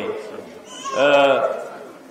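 A man's voice making one drawn-out vocal sound, about half a second long, a second in, between spoken phrases.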